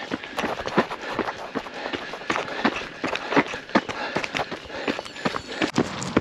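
A runner's footsteps on a gravel trail, a steady stride of nearly three footfalls a second, heard from a camera carried by the runner.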